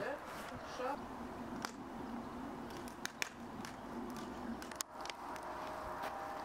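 Faint voices, with a few sharp clicks scattered through.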